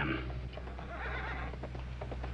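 A horse whinnying outside, with a few hoof clops, over the steady low hum of the soundtrack.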